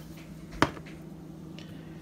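A black pepper shaker being used over a glass mixing bowl of flour: one sharp tap a little over half a second in, over a faint steady low hum.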